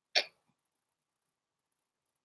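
A single brief sip from a mug, a quick sucking of a drink at the lips.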